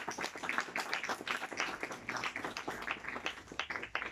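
A small audience applauding, with dense, irregular hand claps that thin out near the end.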